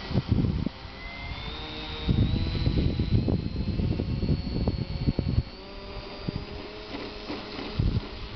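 Electric motor and propeller of a radio-controlled model plane whining, the pitch rising in steps as the throttle is opened for the take-off run. Gusts of wind rumble on the microphone throughout.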